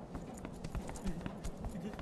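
Interior of a moving passenger train: a steady low rumble with many irregular clattering knocks, and voices faintly underneath.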